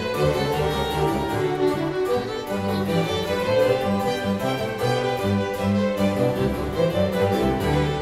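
Baroque orchestra of violins, cello, double bass and harpsichord continuo playing an instrumental ritornello of a tenor aria without the singer, a bass line stepping from note to note beneath the strings.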